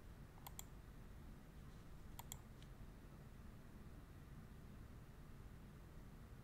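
Computer mouse clicking: two quick double-clicks about a second and a half apart, with a faint single click after the second pair, over near-silent room tone.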